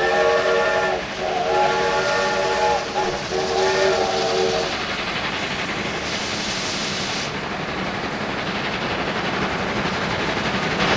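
Steam locomotive whistle sounding a chord of several tones in three blasts, the last ending about five seconds in, followed by the steady hiss and running noise of the train.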